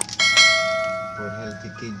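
A click, then a bright bell chime that rings out and dies away over about a second and a half: the notification-bell sound effect of an on-screen subscribe-button animation, over background music.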